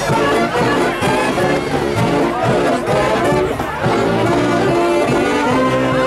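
A Mummers string band playing live, a massed saxophone section carrying the tune over the rest of the ensemble, with notes held longer near the end.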